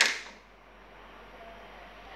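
A single sharp bang right at the start, dying away within about half a second, followed by faint hiss.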